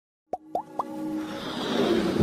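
Sound effects of an animated logo intro: three quick pops about a quarter second apart, each rising in pitch, then a swelling whoosh that grows louder toward the end.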